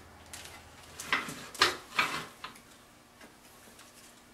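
A few sharp clicks and knocks, about four of them within a second and a half, as a skeleton-figure armature and its metal mounting stand are handled and adjusted.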